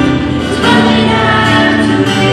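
Live Christian worship music: a band with acoustic guitar and keyboard accompanying singers in sustained, held notes.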